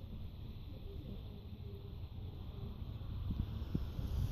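Low wind rumble on the microphone outdoors, with a few faint handling clicks near the end.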